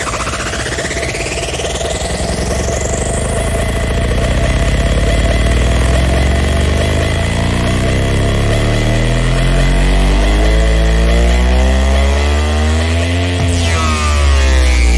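Trance music on a DJ's decks: a rising sweep over the first few seconds, then a buzzy synth sliding steadily upward in pitch over a deep bass. The rising sweep is the build-up of a breakdown in the set.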